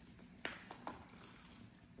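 A few faint, short cracks as a durian's spiky husk is pried apart by hand along its seams, the sharpest about half a second in.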